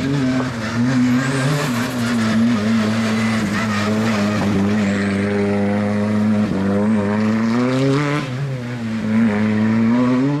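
Hyundai rally car's engine running hard at high revs through a loose gravel corner, its note holding fairly steady with short dips and recoveries as the driver works the throttle, over the hiss of tyres and gravel.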